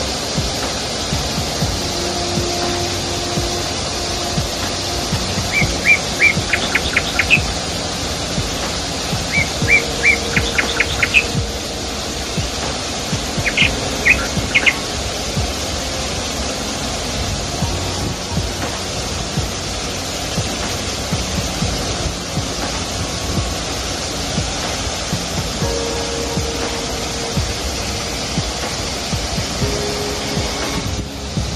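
A waterfall rushing steadily into a pool. Birds chirp in three short bursts during the first half.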